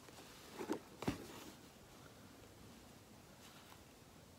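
Faint handling sounds of hand embroidery in a wooden hoop: a couple of short soft knocks about a second in, with a brief rasp of thread drawn through cloth, then only quiet room tone.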